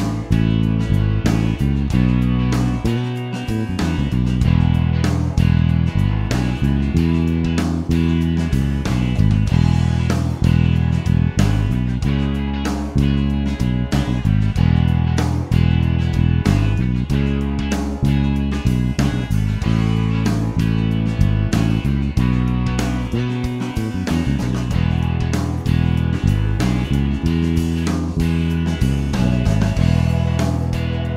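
Electric bass guitar played fingerstyle, a classic rock bass line in a steady driving rhythm, over a rhythm track with guitar at performance tempo.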